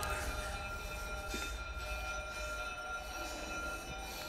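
Quiet background score: a steady drone of several held high notes over a low rumble.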